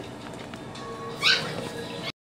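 Yorkie Poo puppy giving a single short, high-pitched yelp about a second in, over background music.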